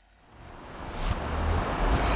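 A rushing noise fading in from silence and growing steadily louder.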